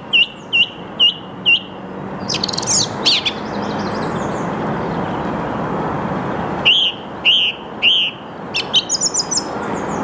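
Song thrush singing: a clear whistled note repeated about twice a second, a short varied phrase, then after a pause another note repeated three times and a quick run of high notes near the end, in the species' habit of repeating each phrase.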